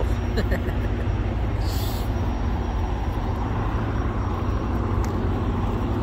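Diesel semi-truck engine idling, a steady low rumble with a constant hum, with a short hiss about two seconds in.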